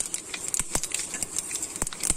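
Hot oil sizzling in a pan, with a steady hiss and irregular sharp pops and crackles as it spatters.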